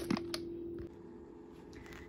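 A few brief crinkles and clicks of plastic packaging being handled around frozen seafood, over a steady low hum that stops just under a second in, then faint room tone.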